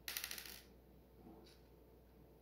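A small metal screw and nut clinking and rattling for about half a second, as they are taken out of the fan's wire guard, then one faint tick about a second later.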